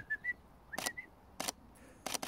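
DSLR camera shutter clicking several times, taking single frames about a second apart, with short high beeps in between. The beeps fit the camera's autofocus confirmation.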